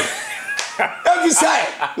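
Hands slapping together once at the start, followed by a woman laughing and a man talking.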